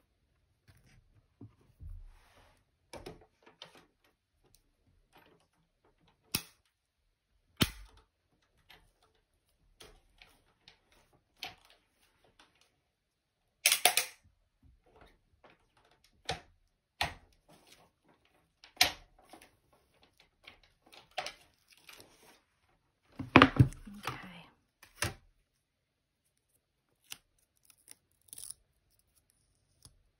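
Hands handling acrylic cutting plates, a metal die and cardstock on a craft mat: scattered clicks, taps and paper rustles, with louder clattering bursts about 14 seconds in and again a little after 23 seconds.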